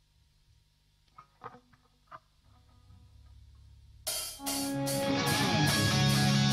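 Near silence with a few faint clicks and a low hum, then about four seconds in a live heavy metal band starts loud: distorted electric guitars, bass and drums with regularly repeating cymbal hits.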